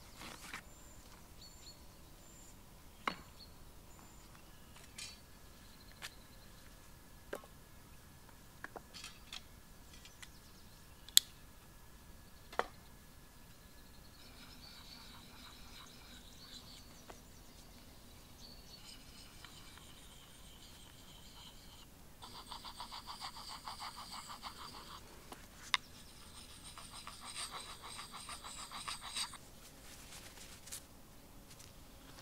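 Wood being worked with hand tools: scattered sharp knocks and clicks, then two bursts of rapid, rhythmic rasping a few seconds long, as a blade scrapes and carves resinous fatwood.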